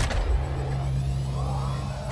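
Deep sound-design drone: a steady low hum over a rumble, with a faint tone swelling and fading in the middle.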